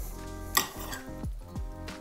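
Background music with a couple of sharp clinks of a metal knife and fork against a ceramic plate as an omelette is cut, one about half a second in and one near the end.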